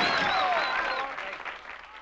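Audience applause with scattered shouts and screams from the crowd, fading out steadily as the song's recording ends.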